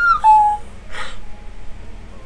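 A woman's high-pitched squeal that drops in pitch and is held for about half a second, followed about a second in by a short breathy gasp.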